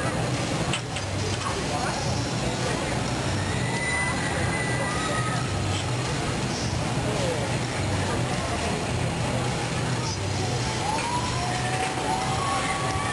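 Glassblowing furnaces running with a steady rushing noise and a slow low pulsing, under faint indistinct voices.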